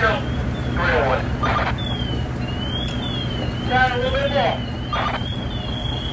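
Fire-scene din: the steady low hum of a running fire apparatus engine throughout, voices calling out about a second in and again around four seconds in, and a siren sweeping up and down faintly through the second half.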